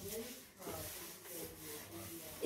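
Chalkboard duster rubbing across a chalkboard, wiping off chalk in repeated strokes.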